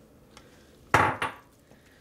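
A single clatter of kitchenware, utensil against cookware, about a second in, fading within half a second.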